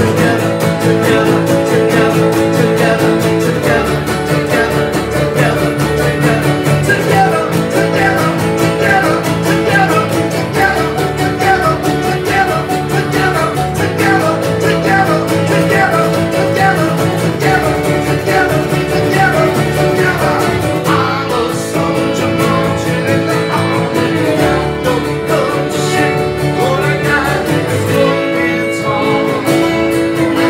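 Live acoustic band playing a folk-rock song: two strummed acoustic guitars and a fiddle, with a man singing.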